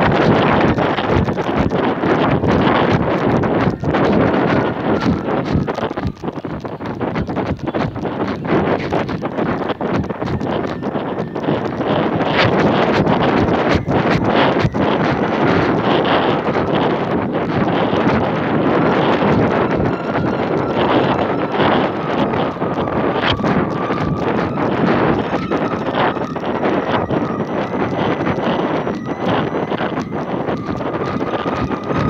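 Wind buffeting the microphone of a camera carried aloft on a kite: loud, steady wind noise full of crackles and rattles, with a faint wavering whistle in the second half.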